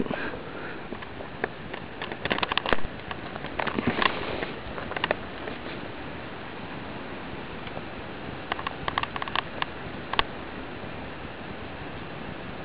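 Steady outdoor background hiss with three short flurries of clicks and rustling, typical of a handheld camcorder being handled as it pans.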